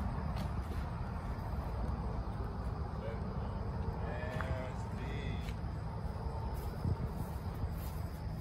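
Faint distant voices over a steady low background rumble, with brief snatches of talk about halfway through.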